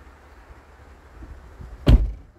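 A single loud, sharp thump near the end, over a low steady rumble.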